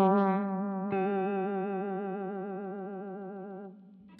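Electric guitar note played through a MayFly Audio Sketchy Zebra vibrato pedal set to full speed and minimum feedback, giving a fast, even pitch warble. The note is picked again about a second in and rings down, fading out near the end.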